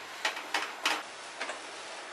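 Silicone spatula stirring a crumbly, syrupy ground chana dal mixture in a nonstick pan: four short scrapes within about a second and a half.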